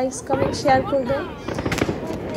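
Fireworks going off, with several sharp bangs and crackles, over people talking.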